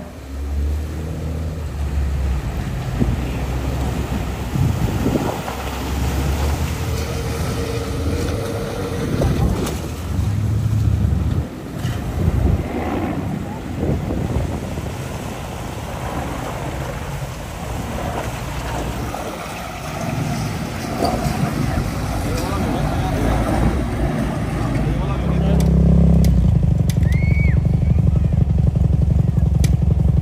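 Off-road vehicle engines running amid outdoor noise. For the last few seconds a pickup truck's engine is steady and louder as it drives across sand.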